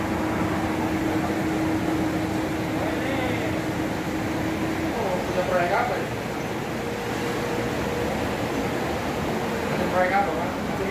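Steady rushing background noise with a continuous hum whose pitch steps up about halfway through, and faint voices.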